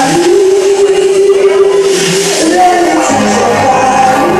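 A woman singing into a microphone over amplified backing music, holding one long note for about two seconds before moving to shorter notes; a bass line comes in about three seconds in.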